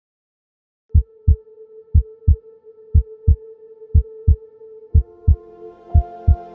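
Heartbeat sound effect: five double thumps (lub-dub), one beat a second, over a steady drone, with soft music coming in near the end.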